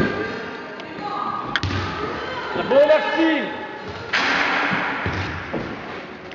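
Basketball thuds and knocks on a sports-hall floor and backboard during a free throw, with voices calling out in the hall. A sharp knock comes about a second and a half in.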